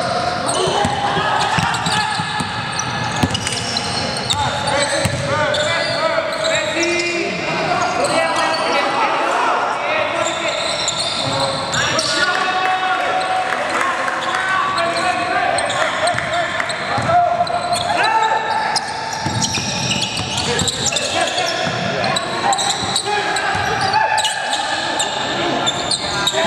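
Live game sound of basketball play in an indoor gymnasium: a basketball bouncing on the hardwood floor amid indistinct players' voices calling out.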